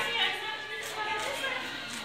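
Indistinct voices talking, with faint background music.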